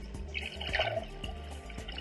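Underwater bottlenose dolphin clicks and chirps under background music with a steady low beat.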